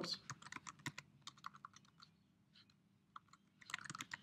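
Faint typing on a computer keyboard: a quick run of separate keystrokes over the first two seconds, a near-pause, then a few more keystrokes near the end.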